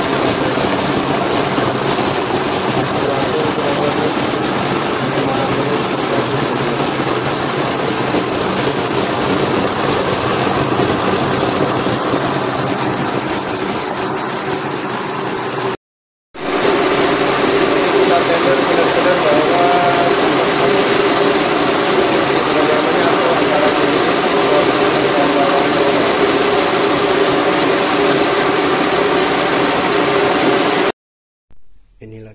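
Electric countertop blender running steadily at speed, its motor whining as it churns chunks of onion, single-clove garlic and whole limes in water into a purée. The sound cuts out briefly about halfway, then the blender runs on at the same level.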